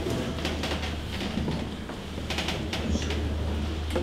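Handheld microphone being handled and passed to a new speaker: scattered clicks and knocks over a steady low hum from the sound system.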